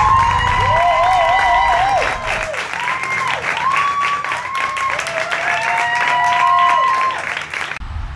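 An audience clapping and cheering, with whoops that rise and fall over the clapping. It cuts off suddenly near the end.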